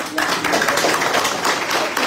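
A group of seated men clapping together, many hands at once in a dense, continuous round of applause.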